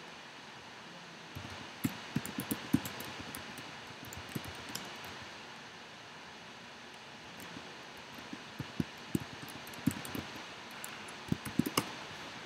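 Computer keyboard keystrokes: a scattered run of clicks about two seconds in, a quieter stretch, then quicker keystrokes through the last few seconds, over a steady faint hiss.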